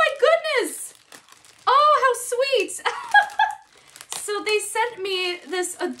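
A woman speaking in a high-pitched, excited voice in short exclamations, with plastic packaging crinkling as it is handled.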